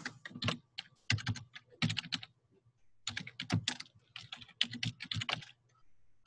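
Typing on a computer keyboard: short bursts of keystrokes with brief pauses between them, the longest a little before the middle.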